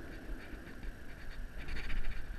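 Wind rumbling on the microphone, with a few faint clicks near the end.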